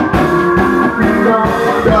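Live rock band playing loudly: electric guitar over bass and drums, with the singer's voice coming back in near the end.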